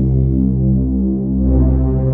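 Low, sustained synthesizer drone from a dramatic film score, with a slight pulsing and its chord shifting a little past a second in.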